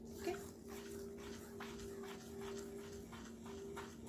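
Faint, repeated brushing strokes of a hand and feather through fine sand on a plate, over a steady low hum.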